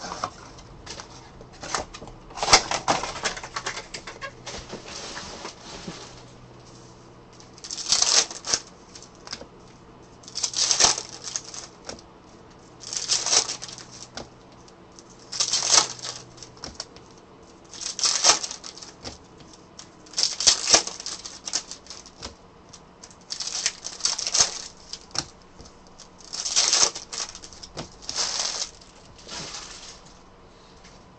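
Foil wrappers of 2023 Panini Revolution WWE hobby card packs being torn open one after another, a sharp crinkling rip about every two and a half seconds, with softer rustling of handled packs between the rips.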